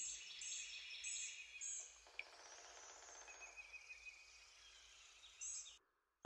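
Faint outdoor nature ambience of birds chirping: a high call repeats about every half second at first, then a soft steady haze with occasional chirps, cutting off just before the end.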